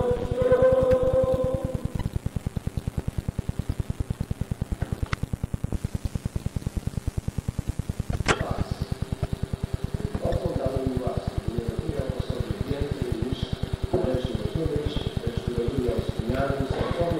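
Group singing on an old tape recording fades out in the first two seconds, leaving a rapid, evenly spaced low pulsing of recording noise that runs throughout. There is a sharp click about eight seconds in, and voices come back from about ten seconds.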